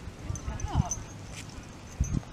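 Footsteps walking on pavement: a few dull thuds, with a short high chirp near the middle.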